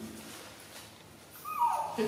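A baby macaque giving a short whimpering cry about one and a half seconds in, its pitch sliding downward.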